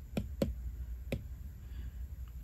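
Apple Pencil tip tapping the glass of an iPad's on-screen keyboard: three light clicks, two close together near the start and one about a second in.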